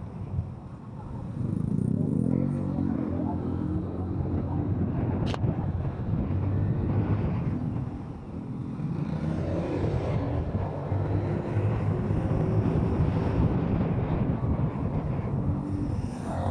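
Kymco SZ150 motorcycle engine pulling away from a stop, its pitch rising as it accelerates, with road and wind noise. It eases off about eight seconds in and then picks up again. A single sharp click about five seconds in.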